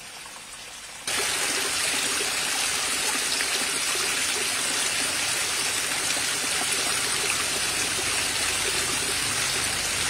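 Small rocky creek running over rocks and little cascades: a steady rush of flowing water. It is faint at first, then comes in suddenly much louder about a second in.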